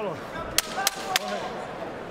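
Three sharp knocks about a third of a second apart, the timekeeper's ten-second warning struck on the ring apron near the end of a boxing round, over a murmuring arena crowd.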